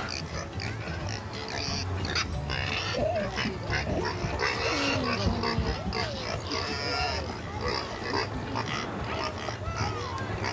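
Recorded pig grunts and oinks from a pig-shaped playground sound panel, set off as a child presses its button, playing over a background of music and voices.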